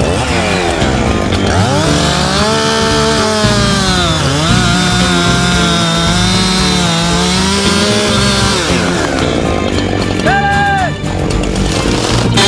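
Chainsaw revving up and running at high speed through a cut, its pitch dipping briefly under load about four seconds in, then dropping off near nine seconds; a short rev follows just after ten seconds.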